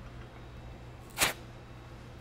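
Steady low hum, with one short, sharp hiss about a second and a quarter in.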